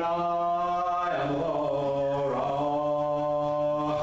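A man chanting a prayer in long held notes: one note for about a second, then a step down to a lower note held to the end.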